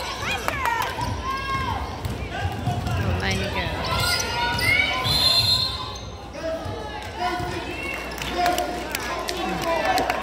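A basketball being dribbled on a hardwood gym floor, with players and spectators calling out in the large gym.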